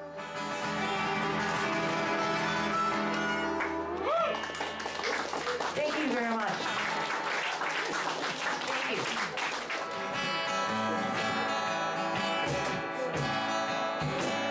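Acoustic guitar and harmonica hold a final chord. Then comes applause with voices and laughter, and about ten seconds in an acoustic guitar starts playing again.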